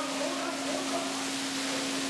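Water spraying from a hose onto a floor: a steady hiss with a constant low hum underneath.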